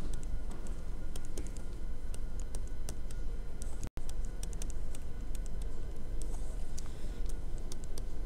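Stylus tapping and ticking on a tablet screen during handwriting: an irregular run of light clicks over a steady low room hum.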